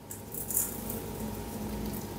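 Small seeds and a folded paper dropped into a dry coconut shell by hand: a brief light rattle about half a second in, then faint rustling.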